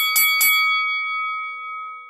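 Notification-bell sound effect: a bell chime struck three times in quick succession within the first half-second, then ringing on and slowly fading.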